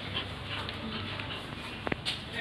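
Labrador retriever making play vocal sounds while it tugs on a cloth in a tug-of-war, with a short sharp sound near the end.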